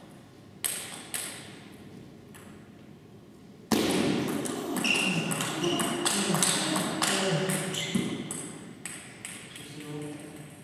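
A table tennis ball gives a few separate clicks, then from about four seconds in comes a fast rally: the celluloid ball clicks off rubber bats and the table in quick succession for about four and a half seconds.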